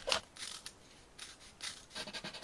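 Faint, crisp paper sounds made by hand: a few short strokes as sheets of coloured origami paper are folded and creased.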